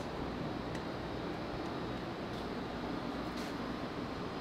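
Steady, even background noise of the workshop, a constant hum and hiss with no distinct knocks or clicks.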